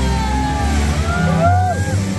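Background music: a steady low bass line with arching, gliding tones that rise and fall above it.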